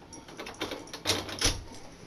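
Bathroom doorknob and latch being handled as a hand grips and turns the brass knob: a few small clicks, then two sharper clacks about a second in.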